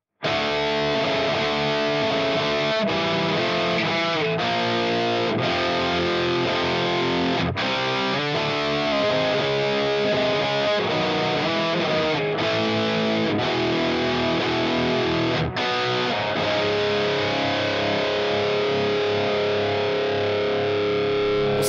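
Heavily distorted electric guitar riff playing back from a loop through the Fractal Audio Axe-Fx III, its Virtual Capo pitch shifter set one semitone down. It starts abruptly just after the opening, and the riff cuts out briefly several times in rhythmic stops.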